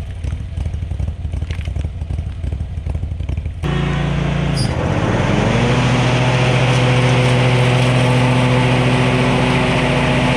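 Bad Boy Elite zero-turn mower's engine running at a low, uneven idle; about four seconds in the sound changes abruptly, and the engine's pitch dips and then climbs to a steady high-speed run as the mower moves onto a pile of sticks.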